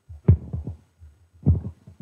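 Microphone handling noise: a few low thumps and knocks as a handheld microphone is taken up for an audience question. The loudest comes just after the start and another about one and a half seconds in.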